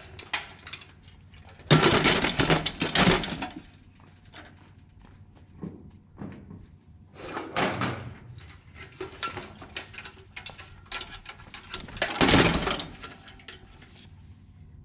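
Handling noise around aluminium PAR can lights on a truss bar as cables are hung on them: three bursts of rustling, knocks and light clanks, with scattered smaller knocks between.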